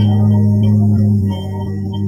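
A man's voice holding one low, steady tone on an open vowel: meditative toning, the breath voiced as a vibration. It eases a little softer in the second half.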